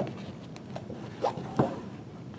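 An emptied hardcover book cover being handled, turned over and laid open on a tabletop. There is a knock right at the start, then two shorter knocks about a third of a second apart past the middle, with rubbing between them.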